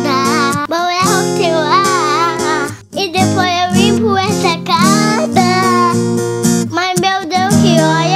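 A young girl singing a sertanejo parody in Portuguese over an acoustic guitar backing track.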